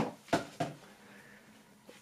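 Three short knocks in the first second as cardboard packaging and its contents are set aside on a wooden tabletop.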